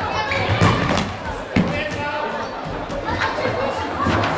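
Voices of players and spectators echoing in a sports hall during a handball game, with the sharp thud of the handball hitting the floor or a player about a second and a half in.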